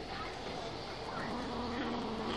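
Kitten growling: a low, drawn-out, buzzing growl that grows stronger in the second half, given to guard its treats.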